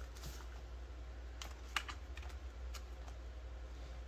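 Polymer banknotes being handled and sorted into a binder pouch, crinkling with about six sharp clicks and snaps, the loudest a little under two seconds in.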